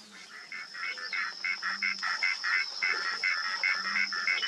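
Insects calling: a steady high-pitched buzz with a second pulsing call about four times a second.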